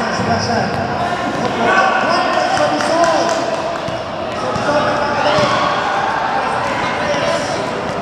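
Basketball court ambience in a large indoor hall: overlapping voices of players and spectators, with a basketball bouncing on the court.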